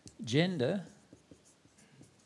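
Marker pen writing on a whiteboard: faint, short strokes and taps as letters are drawn. A man's voice says one short word about a quarter second in, the loudest sound here.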